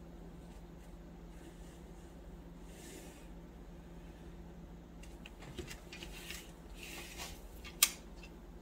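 Faint scratching of a Uni-ball Eye Fine pen drawing loose outlines on hot-press watercolour paper, in short strokes in the second half, over a steady low hum; a single sharp click near the end.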